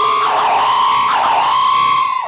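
A single held electronic keyboard tone, high and sustained, sagging in pitch and swelling twice before it cuts off: a dramatic music cue on a stage play's sound system.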